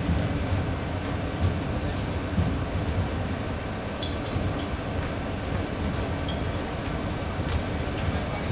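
Low, steady rumbling drone from live stage amplifiers and instruments between songs, with a few soft thumps.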